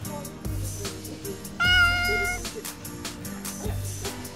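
A single short cat meow, about a second and a half in, stands out loudly over background music with a steady beat.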